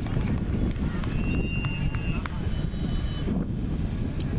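Outdoor soccer-field ambience: wind rumbling on the microphone under indistinct spectators' voices. About a second in, a high steady whistle tone is held for just over a second.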